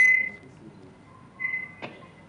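A steady high-pitched electronic tone on a remote audio line, loud at first and dying away within a moment, then a second, softer tone and a sharp click near the end.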